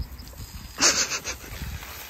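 Horse giving one short snort about a second in.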